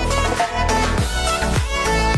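Background music: a violin-led melody over a steady electronic dance beat.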